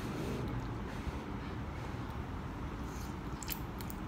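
A person eating instant udon noodles: soft slurping and chewing with a few short wet mouth sounds, over a steady low background noise.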